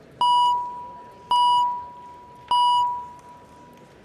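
Three chime tones about a second apart, each starting sharply and ringing down: the chamber's roll-call voting chime, signalling that the roll is open for members to vote.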